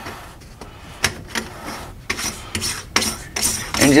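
Sink strainer locknut being spun by hand onto the threaded strainer body: a rasping rub of the threads and friction ring, with scattered short clicks and scrapes.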